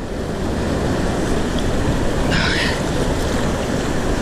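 Mountain creek rushing steadily over a boulder cascade close to the microphone: a loud, even wash of white water.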